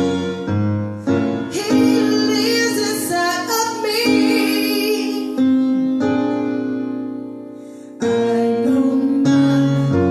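A woman sings a slow song while accompanying herself on an electronic keyboard played with a piano sound. Her voice rises over the held chords in the first half; the chords then die away, and a new chord is struck about eight seconds in.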